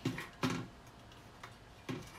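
Small aluminium tins set down one by one on a steel tray, giving a few light metallic clicks at uneven intervals.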